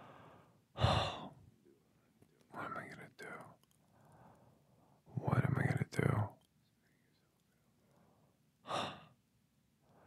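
A man's voice close to the microphone: four short bursts of sighs, breaths and whispered words, the longest about five seconds in.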